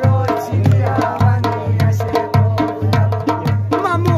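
Live Khowar folk song: a man's voice singing over drums keeping a steady, even beat.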